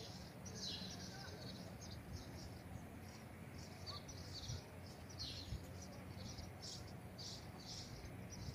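Small birds chirping outdoors: short high chirps repeating every half second or so, over a faint low background rumble.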